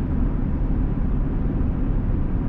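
Steady low rumble inside the cab of a 2020 Chevrolet Silverado with the 3.0 L Duramax inline-six diesel, driving at road speed: engine and tyre noise.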